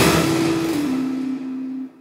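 Instrumental karaoke backing track with the melody removed: a noisy swell that fades out, under a low note stepping down in pitch, then a brief break to near silence at the end.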